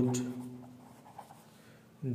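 A pen writing by hand on paper on a clipboard, with faint, light scratching strokes about a second in. At the very start a man's voice finishes one spoken word.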